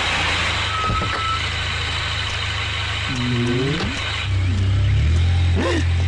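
Toyota SUV engine running as the vehicle drives, a steady low drone that grows louder about four seconds in.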